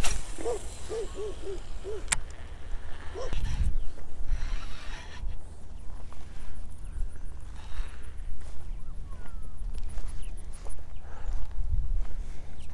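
Wind rumbling on the microphone, with a short run of low hooting notes near the start.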